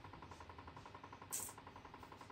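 A faint, steady fast rattle, about a dozen ticks a second, over a low hum from a running motor. A short rustle of cloth comes about a second and a half in.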